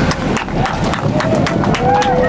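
Wind buffeting a body-worn microphone on a high-wire walker, with rumble and irregular clicks from the wind and handling, and a man's indistinct voice breaking through near the middle and end.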